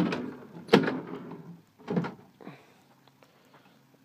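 Wooden kitchen drawers in a motorhome being pulled out one after another on their runners, giving a few sharp clunks. The loudest comes just under a second in, and the last ones follow at about two and two and a half seconds.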